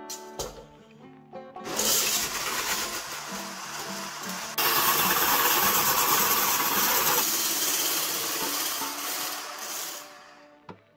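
Electric hand-blender whisk attachment whipping egg whites in a tall plastic beaker. It starts a couple of seconds in, jumps louder about halfway through, and stops at the end, by which point the whites have turned to white foam.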